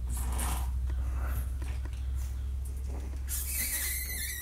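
A steady low hum under faint scuffling and soft taps from Boston Terrier puppies playing with plush toys on carpet; a hiss sets in about three seconds in.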